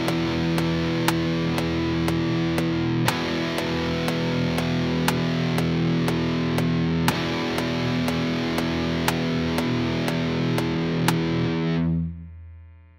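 Electric guitar played through a Line 6 guitar amp model with room reverb, holding sustained chords that change about every four seconds. A metronome click ticks twice a second, at 120 bpm, underneath.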